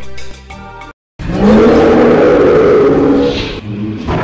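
A loud, rough dinosaur roar from an animatronic Tyrannosaurus rex. It starts suddenly about a second in, after music cuts out, and lasts about two and a half seconds before fading.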